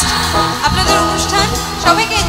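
A recorded Indian song playing: band accompaniment with a woman's singing voice, the voice coming in strongly near the end.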